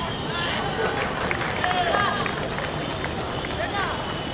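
Short, scattered shouts and calls from distant voices on a football pitch, over steady open-air background noise.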